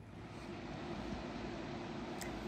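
Steady, faint background rushing noise with a low hum underneath, even and unbroken, with no distinct events.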